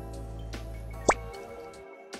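Soft background music with steady held notes, and about a second in a single quick rising water-drop 'bloop' sound effect.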